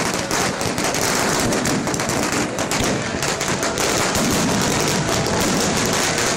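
Fireworks crackling and popping in a fast, unbroken stream, the reports so close together they run into one another like machine-gun fire.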